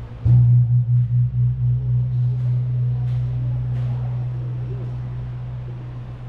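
A large gong struck once just after the start, leaving a deep hum that throbs at first and then slowly fades.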